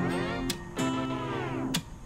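Background music led by guitar, with held notes, briefly cut off about half a second in and again near the end.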